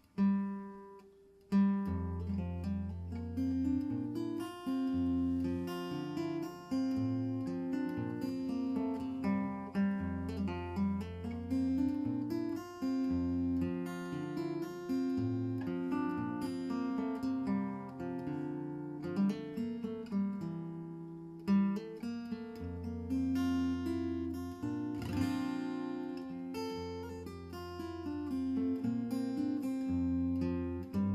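Solo acoustic guitar played fingerstyle. It opens with one plucked note, then after a short pause a picked melody begins over low bass notes that ring for seconds at a time.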